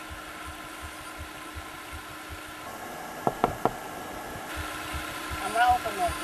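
A car engine idling with a low, even throb, and three short sharp clicks about three and a half seconds in.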